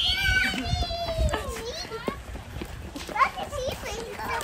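Young children's high-pitched voices calling out and chattering, loudest at the start, with another short call about three seconds in.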